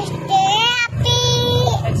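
A child's voice calling out two drawn-out notes, the first rising in pitch and the second held steady, over the steady running of a motorcycle engine.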